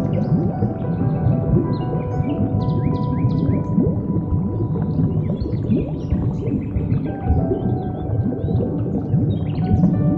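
Ambient music with long held notes, mixed with whale calls: many short rising and falling cries, with clicks and chirps above them.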